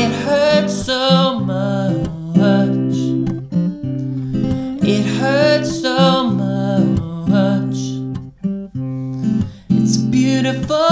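Steel-string acoustic guitar playing chords under a man's sung vocal phrases, the voice loudest near the start and again about five seconds in, with short lulls late on.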